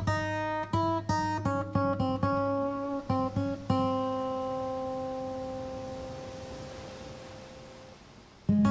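Soundtrack music: an acoustic guitar picks a quick phrase of single notes, then lets a final note ring out and fade slowly over the last four seconds.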